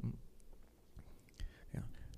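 A short pause in speech: a soft 'hmm' at the start, a faint click, and a quiet 'yeah' near the end.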